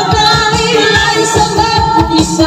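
A woman singing into a microphone through a PA, over amplified backing music with a steady beat.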